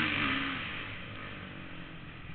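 Kawasaki 450 single-cylinder four-stroke flat-track motorcycle engine heard from the rider's helmet, its pitch falling in about the first half second and then running quieter and steadier.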